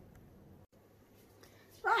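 Quiet room tone with a faint low hum, cut by a brief total dropout about two-thirds of a second in; a woman starts speaking again near the end.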